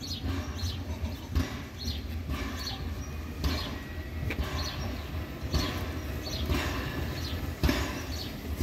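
Narrow-gauge steam locomotive 99 1781-6, a DR class 99.77–79 tank engine, coming slowly up the track. Its exhaust chuffs about once a second over a steady low rumble.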